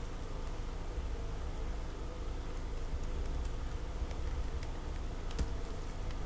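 A few scattered clicks from a computer keyboard over a steady low hum.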